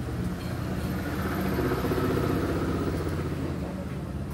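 A steady engine rumble that grows louder about a second in and eases off again near the end.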